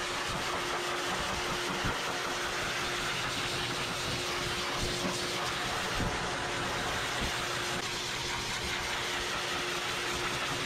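Twin-hose high-velocity pet force dryer blowing steadily, a continuous rush of air over a constant motor hum, as it dries a freshly bathed dog's thick double coat.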